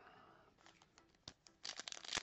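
Mostly quiet, with a few faint handling clicks; near the end, the crinkle of a foil baseball-card pack wrapper being torn open.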